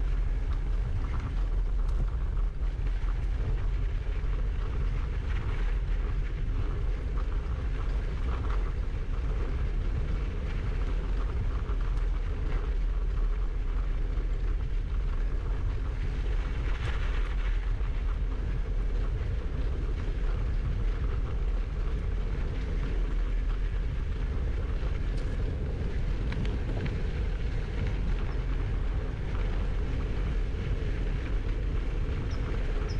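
Steady low rumble of a gravel bike rolling along a packed dirt path, with wind buffeting a handlebar-mounted GoPro's microphone. About halfway through a brief brighter hiss rises over it and fades.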